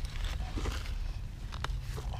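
Packed soil being scraped and picked away by hand digging, a scratchy, crunching sound with a few short sharp clicks.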